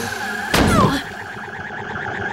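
Cartoon slam sound effect of a body banged against a wall: one loud hit about half a second in, followed by a short falling tone, over a steady eerie warbling drone.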